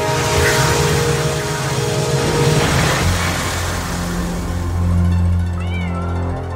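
Dramatic film-score music: held tones under a noisy whooshing sweep, settling into a low steady drone about halfway through, with a brief gliding chirp near the end.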